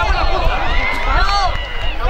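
Several voices shouting and calling out at once, over a steady low rumble.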